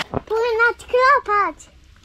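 A child speaking: three short, high-pitched utterances in the first second and a half, then only faint background.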